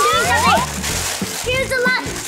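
Children laughing and squealing, their voices gliding up in pitch in the first half-second, over steady background music.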